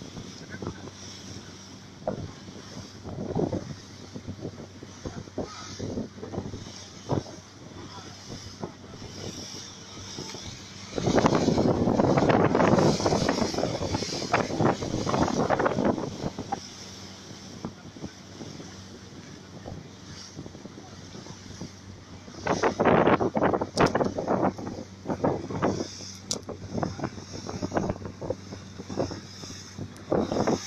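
Motorboat engine running steadily at speed, with water rushing past the hull and wind on the microphone. Two louder, rough stretches of several seconds come about a third of the way in and again past two thirds.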